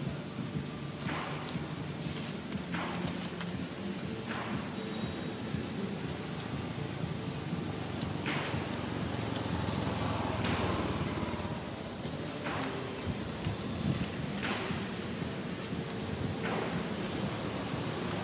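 Short crunching rustles in dry leaf litter, each a fraction of a second long, coming every one to two seconds over a steady low background rumble.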